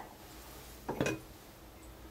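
Two light clinks close together about a second in, from an aerosol lacquer can knocking against the sink it stands in. Faint room noise fills the rest.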